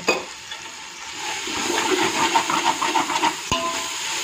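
A perforated metal spatula stirring and scraping onion-tomato masala as it fries in a metal pot, with sizzling, in a quick run of scraping strokes. A sharp metal clink of the spatula against the pot about three and a half seconds in.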